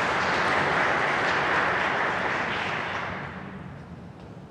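Audience applause, dying away about three seconds in.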